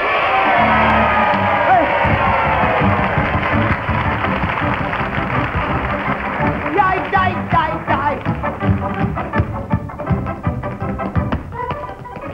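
A studio audience, mostly children, cheering and screaming at the end of a song, with many voices at once. The cheering gives way to lively band music with a quick, steady beat.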